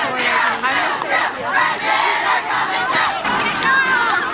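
A large crowd of high-school students shouting and cheering, many voices overlapping.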